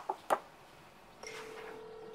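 Telephone ringback tone heard from a mobile phone held to the ear: one steady, even tone that starts a little over a second in, the call ringing unanswered. Two soft clicks come just before it.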